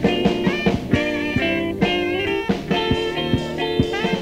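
Jazz fusion band playing at full volume: a sustained melodic lead line over bass and drum kit, with frequent sharp drum hits.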